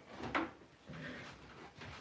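A short knock about a third of a second in, then faint handling noises: a heat gun and its cord being handled and plugged into an extension cord, not yet switched on.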